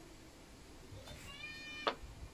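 A cat meowing once, a short, fairly level call starting about a second in, followed by a sharp tap as the small wooden try square is set down on the plywood bench board.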